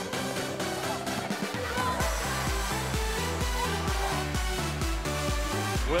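Background music with a steady beat; a deep pulsing bass comes in about two seconds in.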